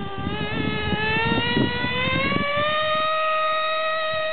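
A 1/16-scale SportWerks Chaos RC buggy's motor whines at high pitch. The pitch climbs as the car accelerates over the first two seconds or so, then holds steady. Low knocks from the car running over the track sound over the first couple of seconds.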